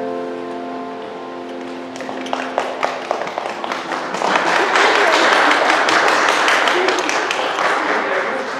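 The last held chord of the piano and choir rings out and fades, and scattered hand claps begin about two seconds in, building into full applause from the congregation.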